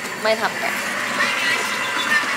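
Steady rush of water running from a bathtub spout into a filling tub.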